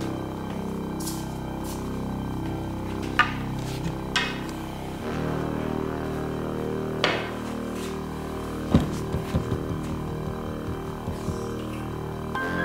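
Ambient background music of long held tones, with a few sharp knocks about three, four, seven and nine seconds in, the last followed by a quick run of lighter taps.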